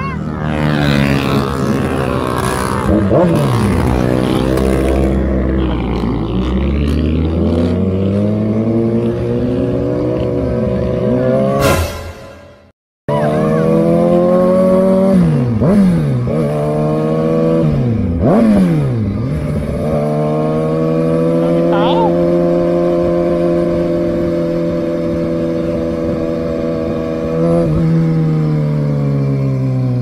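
Kawasaki ZX-6R inline-four sport bike engine under way: the revs rise and fall at first, then the sound cuts out briefly about twelve seconds in. After the gap it pulls through several quick gear changes and holds a steady cruise, and the revs drop near the end as it slows.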